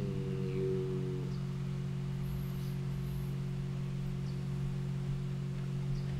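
Steady low electrical hum with a faint higher steady tone, continuous under a brief spoken phrase in the first second.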